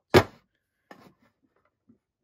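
A small steel Toyo toolbox handled on a desk: one sharp clack just after the start, then a faint softer knock about a second later.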